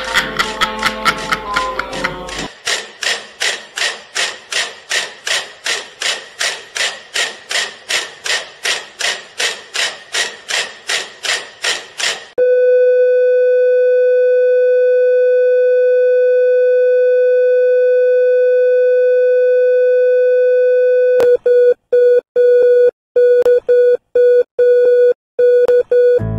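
Heart-monitor sound effect: rapid beeping about three times a second, then a continuous flatline tone held for about nine seconds, the sign of the heart stopping. Near the end the tone breaks up into interrupted beeps.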